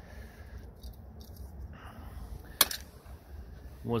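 Low background rumble with light handling of small metal parts and one sharp click about two and a half seconds in.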